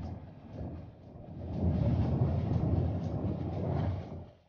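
Low, rumbling water noise of a swimmer's strokes heard underwater, swelling louder about a second and a half in.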